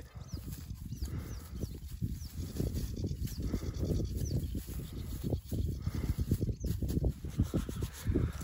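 Gloved hands digging and tearing at soil and grass roots, a continuous irregular scraping and crackling of earth and turf being pulled apart.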